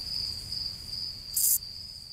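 Crickets chirping in a steady high trill, with a brief louder, higher burst about one and a half seconds in.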